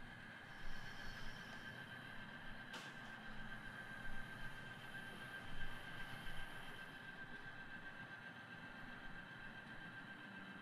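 Faint steady hum and hiss with a thin high whine, and a single click a little under three seconds in.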